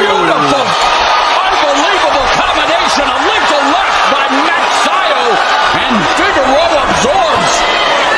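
Boxing gloves landing punches in several sharp smacks, over the steady noise of an arena crowd with voices calling out.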